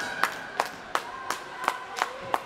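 Rhythmic clapping in an ice rink, sharp claps about three a second, echoing slightly, with a faint held high tone underneath.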